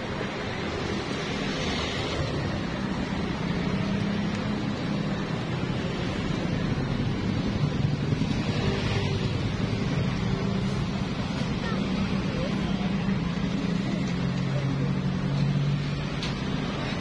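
Steady background roar with indistinct voices and a low, wavering drone. No single sharp event stands out.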